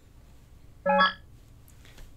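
A single short electronic beep from the YODM opinion machine, lasting about a third of a second near the middle. It signals that the opinion put into the machine is correct.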